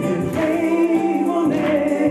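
Black gospel singing: a man sings into a microphone through a PA, with choir voices behind him holding long notes.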